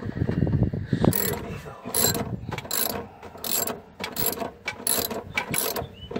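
Hand ratchet wrench clicking in repeated quick strokes, about one burst of clicks every 0.7 s, as it backs out the bolts holding the fuel-pump flange on the fuel tank.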